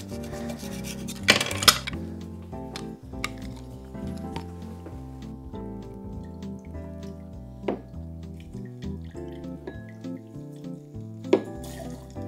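Background music, with a few clinks of a metal jigger against a glass mixing glass as lemon juice is measured and poured: two sharp clinks about a second and a half in and single ones later.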